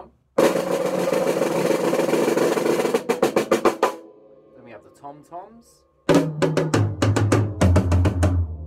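Snare drum played with sticks: a continuous roll for about two and a half seconds, breaking into a short run of separate strokes. After a pause, another quick run of hits starts about six seconds in, joined near the end by a deep, ringing drum note.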